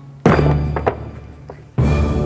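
Two heavy axe blows, about a second and a half apart, each landing on a low sustained chord from the soundtrack music, with a few light clicks between.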